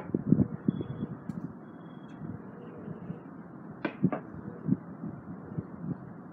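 Light knocks and taps of small pine pieces being handled and set down on a plywood workbench: a quick cluster in the first second, then a couple of sharper clicks about four seconds in, over a faint steady hiss.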